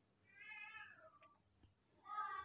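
A faint, high, drawn-out call in the background, about half a second in and lasting roughly half a second, dipping in pitch at its end.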